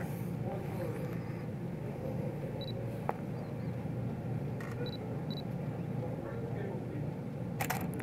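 Canon EOS 5D Mark IV DSLR sounding three short high focus-confirmation beeps, then its shutter firing once near the end, over low steady room noise; a single small click about three seconds in.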